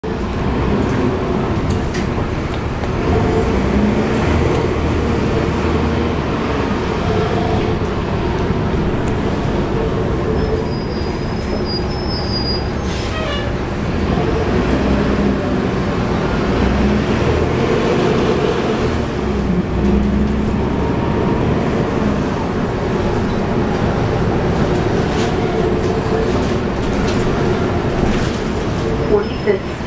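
Cabin sound of a 2011 NABI 416.15 transit bus under way: the Cummins ISL9 inline-six diesel running with its radiator fan on, with the HVAC off and the ZF Ecolife automatic transmission nearly silent. The engine note rises and falls several times with short body rattles mixed in.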